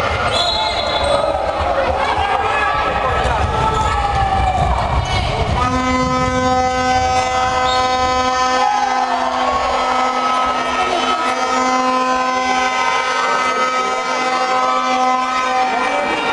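Crowd shouting and voices echoing in an indoor handball hall, with a short whistle blast about half a second in. From about six seconds a horn sounds one steady, held note for the last ten seconds.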